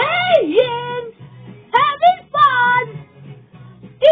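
Music with a singing voice holding long notes that slide up and down in pitch, over a steady low accompaniment.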